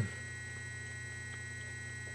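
Steady low electrical mains hum, with a few faint high steady whines above it, holding at an even level throughout.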